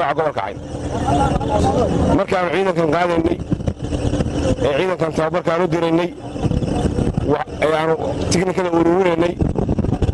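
A person talking continuously in Somali on a radio broadcast, with a steady low hum underneath.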